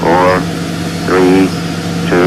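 Launch countdown voice calling two numbers, one a second (the count running on from "seven, six, five", so "four" and "three"), over a steady low hum and background noise.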